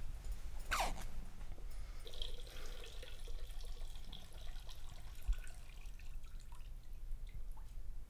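Water trickling and dripping in a small bathroom, over a low steady hum, with a quick falling swish just under a second in.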